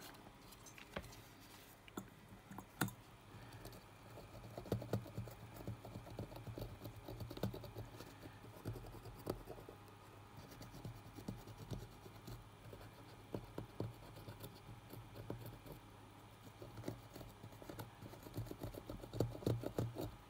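Cotton swab scrubbing a printed circuit board, giving faint scratching with many small clicks and taps as the board is handled. The swab is cleaning residue off the board.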